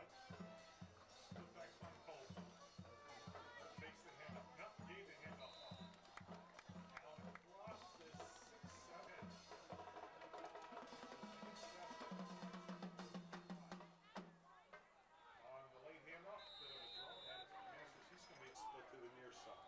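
Band drum beating steadily, about two beats a second, under crowd voices; about twelve seconds in a low held note sounds for about two seconds and the beat stops.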